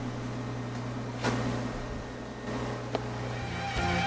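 Steady low electrical hum with two faint clicks, about a second in and about three seconds in; music starts just before the end.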